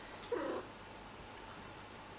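A domestic cat gives one short call, with a curving pitch, about a third of a second in.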